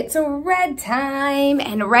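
A high voice singing a short phrase of a few notes, ending in one long held note, before talking begins near the end.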